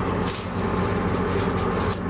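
An engine running steadily nearby, a low even drone with no change in pitch.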